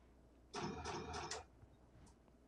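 Electronic soft-tip dart machine's scoring sound effect: a pulsing electronic jingle of about a second, in four quick pulses, as the machine registers a scoring dart.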